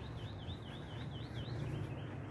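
A bird singing a quick run of repeated high whistled notes, about four a second, which stops shortly before the end, over a low steady background rumble.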